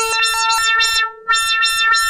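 Moog modular synthesizer playing a patch set by a home-built preset card. It repeats notes about four times a second, each with a bright attack that quickly dulls, over a held steady tone. There is a short break about a second in.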